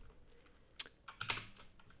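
A few faint, scattered computer-keyboard keystrokes, the sharpest a little before a second in, as keys are pressed to run a command and answer its y/n prompt.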